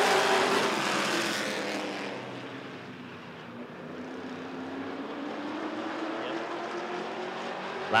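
A field of Sportsman stock cars racing under the green flag. The pack's engines are loud at first as they go past and fade over the first few seconds, then carry on farther off as a steady engine note slowly rising in pitch.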